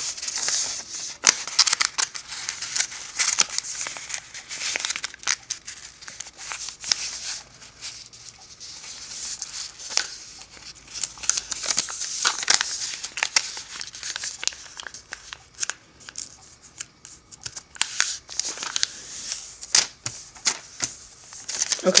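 Square of origami paper being folded by hand, a side edge brought in to the centre crease and pressed flat. It rustles and crinkles in irregular bursts, with short sharp ticks as fingers run down and press the creases.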